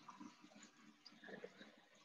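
Near silence, with a few faint scattered ticks and soft knocks.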